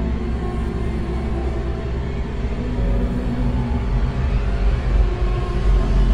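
Deep, continuous rumbling drone of a horror sound-effects ambience, with faint held tones over it, swelling louder about three seconds in.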